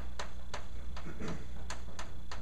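Chalk tapping on a blackboard while words are written: sharp, irregularly spaced clicks, over a steady low hum.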